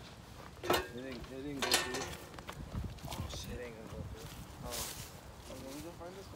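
Indistinct voices of people talking in the background, with a few brief knocks or rustles.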